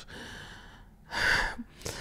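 A woman breathing close to a microphone in a pause in her speech: a soft breath out, then a louder, quick breath in about a second in.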